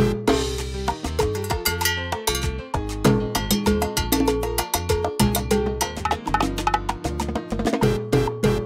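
Timbales played with sticks, quick sharp strikes on the metal-shelled drums, over a salsa backing track with sustained low bass notes.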